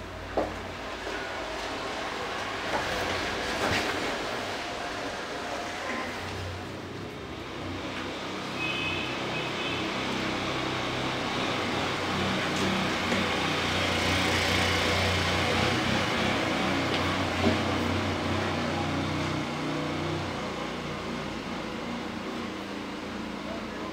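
Steady low rumble with a hiss, like machinery or traffic, with a sharp knock just after the start.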